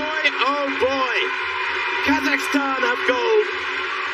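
A man's voice talking, in the style of commentary.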